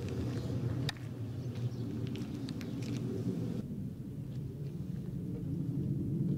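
Outdoor background noise: a steady low rumble, with a single sharp click about a second in.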